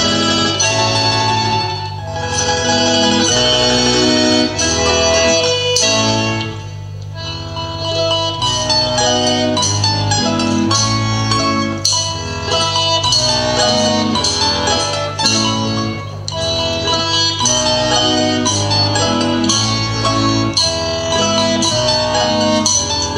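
Lively instrumental Russian folk dance tune of the plyasovaya kind, playing throughout with a steady rhythm and a brief softer passage about seven seconds in.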